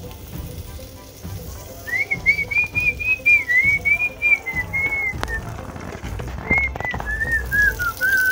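A person whistling a tune: a single high, wandering melody in two phrases, the first starting about two seconds in and the second a little after six seconds. A few sharp clicks of a metal spoon against an aluminium cooking pot come in the second half.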